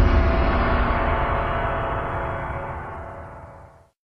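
The closing hit of a film trailer's score, a low, ringing, gong-like tone that decays slowly and fades out just before four seconds in.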